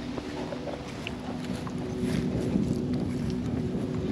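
Wind rumbling on the microphone, with a faint steady low hum underneath.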